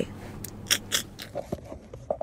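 A few short clicks and crackles over a faint hiss, about five in a second and a half.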